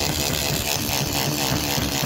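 Battery-powered rotary alloy-wheel cleaning brush whirring steadily, its tapered bristle head scrubbing the fabric of a convertible soft top. The motor's pitch wavers throughout.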